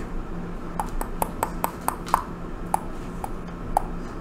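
A run of about ten small, sharp clicks and taps at irregular intervals as a plastic eyeliner pen and its cardboard box are handled.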